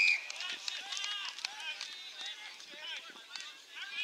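A field umpire's whistle blast at the very start, then players shouting and calling across the ground. The sound cuts off abruptly at the end.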